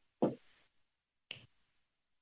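Silent gap on a conference-call phone line between two speakers, broken by one short vocal sound just after the start and a faint click about a second later.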